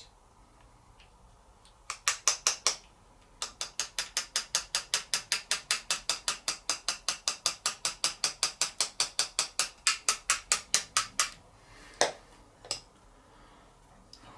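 A Posca paint marker being shaken, its mixing ball clicking inside the barrel. A few clicks start it, then an even run at about five a second for several seconds that stops sharply, followed by two single clicks.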